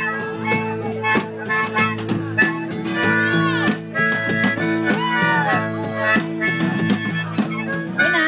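Harmonica solo played through a handheld microphone over live backing music with a steady beat, during an instrumental break between sung verses. It holds chords and bends a couple of notes downward partway through.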